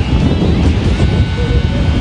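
Wind buffeting the microphone: a loud, steady low rumble that flutters rapidly.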